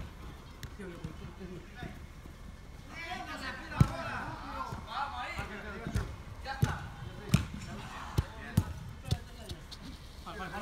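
Soccer ball being kicked on indoor artificial turf: a run of sharp thuds, the first and loudest about four seconds in, then several more over the next five seconds, with players calling out from about three seconds in.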